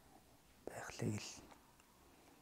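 A man's brief, soft, breathy vocal sound, like a whispered syllable, about two-thirds of a second in. Near silence before and after it.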